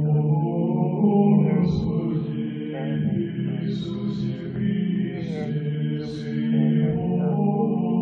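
Slow vocal chant: voices holding a low sustained note under a slowly moving melody, with the hiss of sung consonants now and then.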